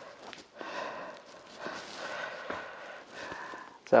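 A man breathing heavily in and out through his nose and mouth, a few separate breaths about half a second to a second long, while tugging a football boot's laces tight. A few faint light clicks from handling the laces come between the breaths.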